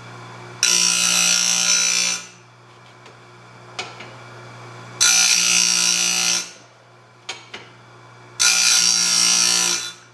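Electric chainsaw sharpener, converted to sharpen a sawmill band blade, grinding the blade's teeth in three loud passes of about a second and a half each. Between passes the grinder motor hums steadily and there are a few short clicks.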